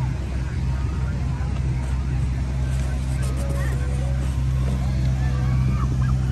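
A steady low engine-like hum under faint background voices chattering.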